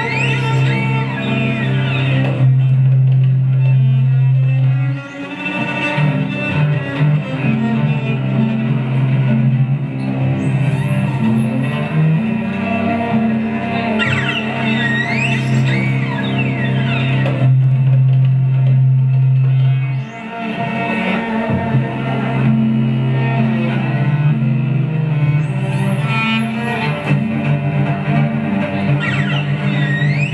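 Live music led by a bowed cello holding long low notes, with a higher melody that slides and wavers in pitch above it. The sound dips briefly about five seconds in and again near twenty seconds as the long notes change.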